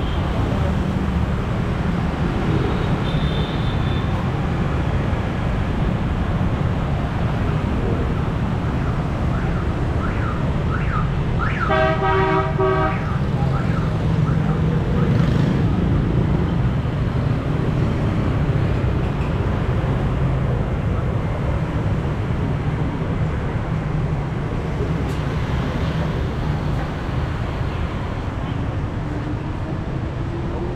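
Steady street traffic, mostly motorbikes and scooters passing. A vehicle horn honks once for about a second near the middle.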